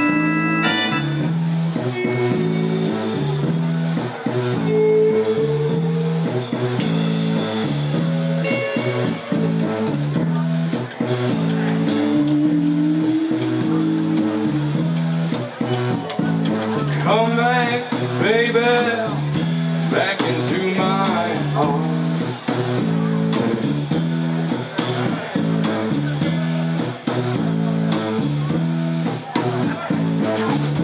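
Live rock band playing an instrumental passage: a repeating low bass line under drums, organ and electric guitar. About two-thirds of the way through, a wavering high line with strong vibrato and bending pitch rises over the band for several seconds.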